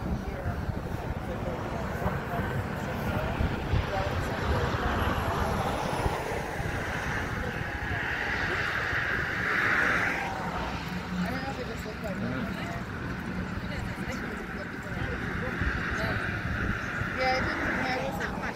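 Road traffic on the bridge deck running steadily, with one vehicle passing loudest about eight to ten seconds in and another near the end. Tourists' voices chatter nearby.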